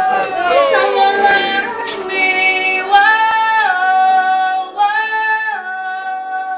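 A crowd calling out together in a toast, then from about two seconds in a short melodic jingle: a held, sung-sounding melody stepping up and down in pitch.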